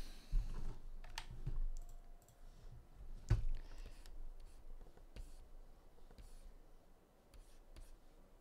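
Scattered light clicks and taps of computer keys and pointer input, the sharpest about three seconds in, with a few soft low desk thumps in the first couple of seconds.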